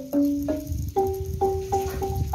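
Wooden xylophone struck with a round-headed mallet, playing single ringing notes: a lower note twice, then a higher note struck four times, about three a second.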